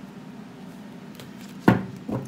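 A tarot card deck handled over a table, with a few faint card clicks, then one sharp knock about three quarters of the way through as the deck strikes the table.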